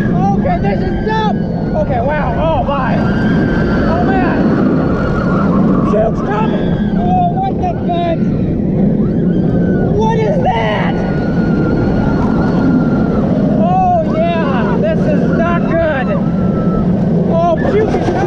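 Steady loud roar of wind and wheels on track as a Bolliger & Mabillard inverted steel roller coaster train races through its inversions, with riders screaming and yelling throughout.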